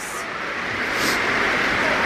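Steady hiss of heavy rain pouring on the roof overhead, heard from inside the building.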